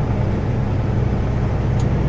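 Peterbilt truck's diesel engine running steadily while driving, a low even drone heard from inside the cab.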